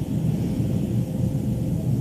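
Steady low rumbling background noise, with no clear speech over it.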